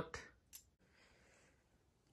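Near silence: room tone, with the tail of a spoken word at the start and one faint click about half a second in.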